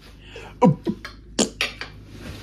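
A short surprised "oh", then about four quick, sharp clicks and taps in the second half.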